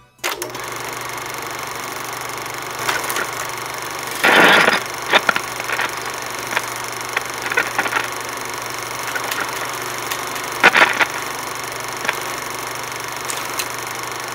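Steady crackling static with a low hum, starting suddenly just after the music ends and dotted with scattered pops. Louder bursts of crackle come about four seconds in and again near eleven seconds.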